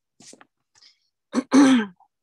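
A person clearing their throat over a teleconference line: a short catch, then a louder, longer 'ahem' that falls in pitch, coming near the end after a few faint small noises.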